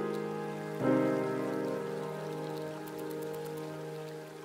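Soundtrack music: a sustained keyboard chord struck about a second in and slowly fading away, with faint high crackles near the end.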